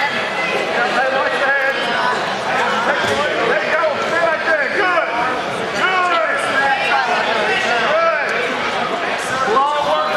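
Several people shouting and calling out at once, a continuous overlapping babble of raised voices from spectators and coaches cheering on a wrestler.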